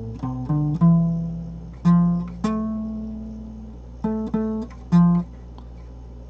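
Guitar playing a short single-note half-diminished phrase: about nine plucked notes, a few left to ring for a second or more, the last one about five seconds in. A steady low hum runs underneath.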